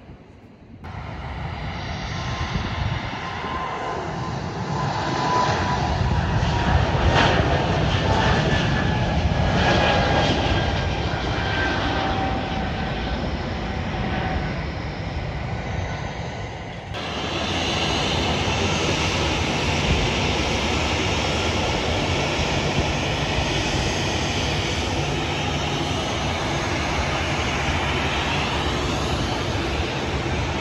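Jet airliner taking off, engines at full thrust: a steady rumble that swells over the first few seconds, with a thin whine slowly falling in pitch as the aircraft climbs away. About 17 seconds in the sound cuts to a steadier jet rumble.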